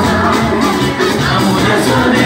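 Live church worship music, loud and continuous: a band with a steady bass line and a lead singer's voice through a microphone over it.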